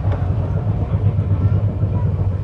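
Indian Railways express train running on the rails, heard from inside a passenger coach: a steady low rumble.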